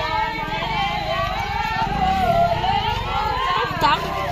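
Several women's voices singing together in long, held, overlapping lines, with crowd voices, over a steady low rumble.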